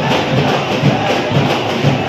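Procession drums beating about twice a second, over the dense noise of a large crowd.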